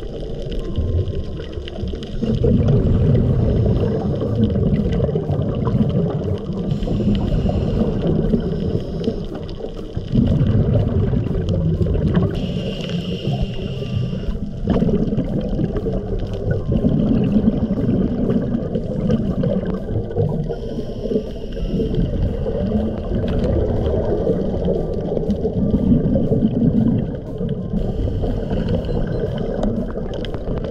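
Scuba regulator breathing heard underwater: bursts of exhaled bubbles rumbling every several seconds, with fainter hiss between them.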